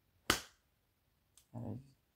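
A single sharp click about a third of a second in, followed by a much fainter tick and then a short spoken word near the end.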